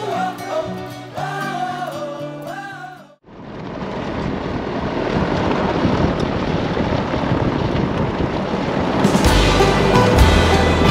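Background music with a melody that cuts off suddenly about three seconds in, giving way to the steady road and wind noise of a vehicle driving on an unsealed dirt road, heard at the side mirror. Music comes back in near the end.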